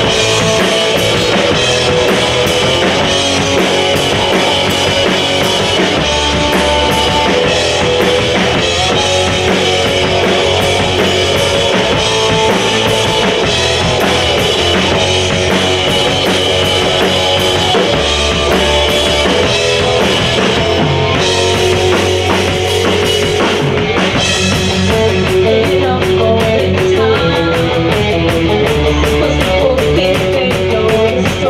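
Live rock band playing loud and without a break: electric guitar, bass guitar and a drum kit with a prominent bass drum.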